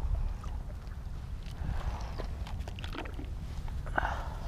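Steady low rumble of wind buffeting the microphone, with scattered small knocks and rustles as fishing gear and a fish finder case are handled.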